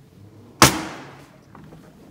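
A single sharp bang about half a second in, dying away quickly: a drinking glass set down hard on the table.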